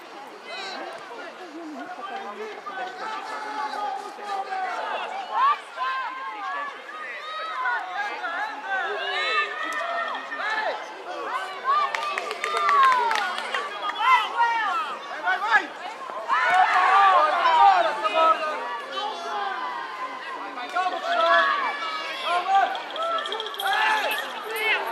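Many voices shouting and calling out at once, children's and adults' voices overlapping, busiest a little past the middle.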